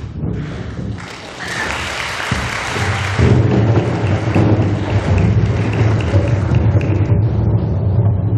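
Audience applause that swells about a second in and grows louder again about three seconds in, over a low rumble.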